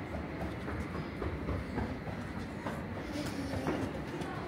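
Small plastic balls rolling along a wall-mounted ball-run trough: a steady low rolling rumble with a few light clicks.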